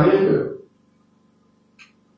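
A man's voice through a microphone and PA: a short vocal sound, the tail of a phrase or a throat-clear, dies away about half a second in. A pause follows, with a faint short sound near the end.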